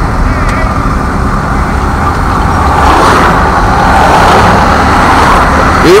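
Vehicle engine and road noise heard from inside the cab of a slowly moving truck in traffic: a steady low rumble that swells a few seconds in.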